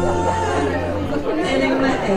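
A held musical note stops about a second in, leaving people chatting in a large hall.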